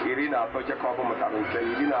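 Speech only: a person talking continuously in a radio programme.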